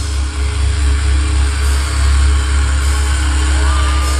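Live industrial metal band through a venue PA: a loud, sustained low bass drone with a hiss of noise over it. Near the end a higher tone slides in and wavers.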